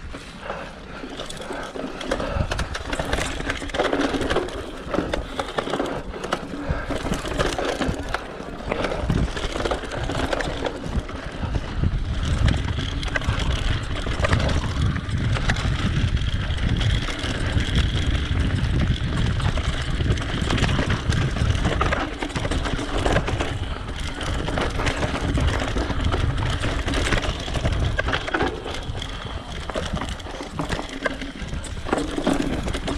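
Mountain bike ridden over a dry, stony dirt trail: tyres crunching on gravel and loose stones, with the bike rattling and knocking over bumps, and a low rumble of wind on the microphone.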